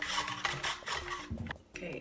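Rasping scrapes of peeled lotus root being pushed over the blade of a plastic slicer into a ceramic bowl, ending in a short knock about one and a half seconds in.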